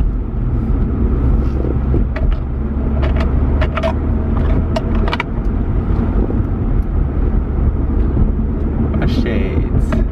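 Road and engine noise inside a moving car's cabin, a steady low rumble, with a few short clicks along the way.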